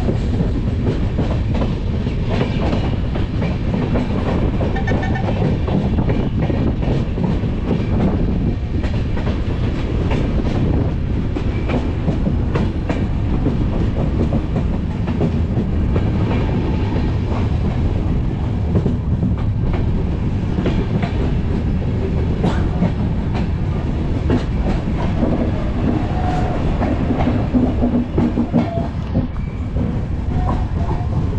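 Indian Railways express passenger train running on the rails, heard from an open coach doorway: a steady rumble of the wheels with rapid, irregular clickety-clack over the rail joints.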